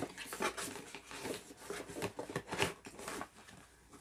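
Small objects and packaging being handled on a table: a run of irregular light clicks and rustles that dies down about three seconds in.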